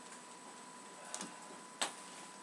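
Quiet room with a faint steady high-pitched hum, broken by two short clicks: a soft one about a second in and a sharper one near the end.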